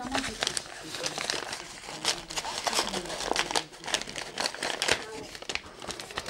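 Brown paper bag crinkling and rustling in irregular bursts as it is handled and opened.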